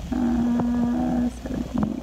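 A woman's drawn-out 'ummm' hesitation hum, held at one steady pitch for about a second, followed by a shorter voiced sound near the end.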